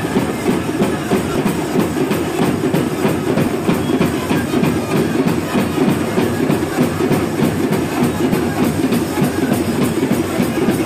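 Fast, steady rhythmic drumming, dense and loud, with no clear melody.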